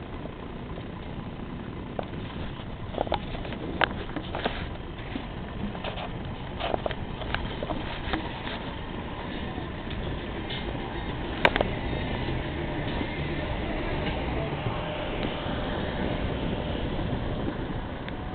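Vehicle driving at road speed, heard from on board: a steady engine and road rumble with scattered short clicks and knocks, the sharpest about two-thirds of the way through.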